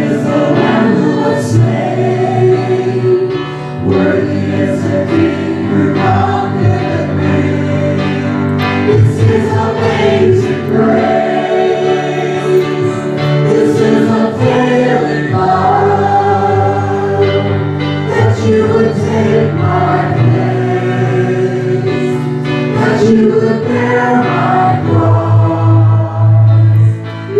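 Worship music: a small group of voices singing together over an electric keyboard accompaniment.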